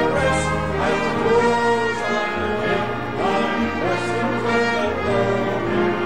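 A congregation singing a hymn over sustained instrumental accompaniment, with a low bass line that moves about once a second under the voices.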